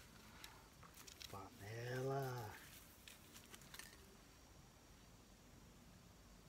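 A man's brief wordless vocal sound, one smooth rise and fall lasting under a second, about two seconds in, over faint scattered clicks.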